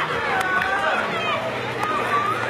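Many voices shouting and chattering over one another outdoors, a crowd with no single speaker standing out.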